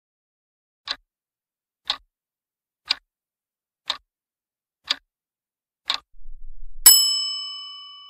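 Countdown timer sound effect: six clock ticks one second apart, then a bright bell chime that rings on and slowly fades as the answer is revealed.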